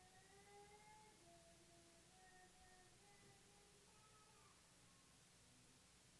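Near silence, with a faint melody of held notes in a low voice-like register drifting slowly in pitch.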